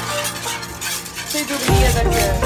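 Hand whisk beating a thin cream mixture in a small pan: quick, repeated ticks and scrapes of the wires against the pan. Background music is faint at first, and its beat comes back near the end.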